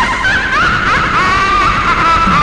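Lo-fi raw black metal recording: a dense wall of heavily distorted guitar with a high, wavering pitched line running above it.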